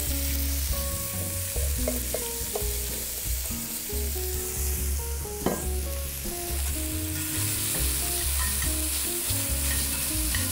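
Diced onions dropped from a steel bowl into hot oil in an enameled Dutch oven, sizzling as they start to sauté and being stirred with a slotted spatula. The sizzle grows stronger about seven seconds in, with a single sharp knock about halfway through.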